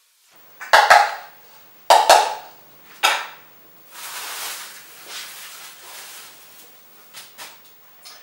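A measuring cup knocked three times against the rim of a bowl, about a second apart, tapping out a cup of flour. A plastic bag then rustles quietly.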